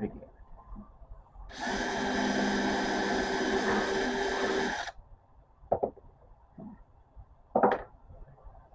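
Craftsman cordless drill running steadily for about three seconds as it bores a second hole through a thin wooden dowel, elongating the eye of a tapestry needle. Two short knocks follow near the end.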